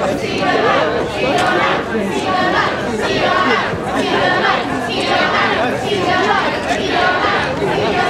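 Crowd chatter: many people talking at once, overlapping voices with no single voice clear.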